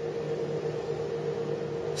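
Steady motor hum of an inclined-plane coefficient-of-friction tester as its plane keeps tilting up. The film-covered sled has not yet slipped, as expected for a low-slip, high-COF film.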